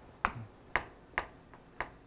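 Chalk striking a chalkboard while a diagram is drawn: four short, sharp clicks spread over about two seconds.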